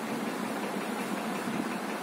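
Steady mechanical hum with an even rush of air, from a running electric fan.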